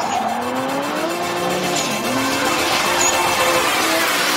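A car engine accelerating hard, its pitch climbing steadily, dropping sharply at an upshift about two seconds in, then climbing again.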